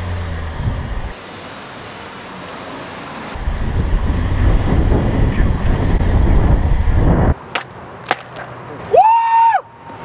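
Wind rumbling and buffeting over the microphone of a camera riding on a moving car, swelling loud in the middle and cutting off suddenly. Two sharp clicks follow, then a long, high yell near the end.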